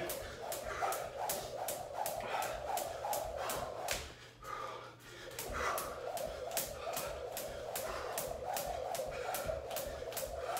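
Jump rope slapping a hardwood floor in a steady rhythm of about three strikes a second as it is skipped, with a short break about four to five seconds in.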